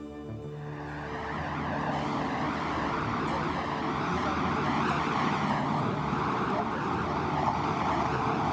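Background music fading out in the first second, giving way to a steady outdoor rush of street traffic that grows louder over the next two seconds.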